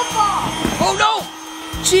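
Handheld electric air pump running with a steady hum, inflating a large vinyl inflatable, with children's voices calling out over it.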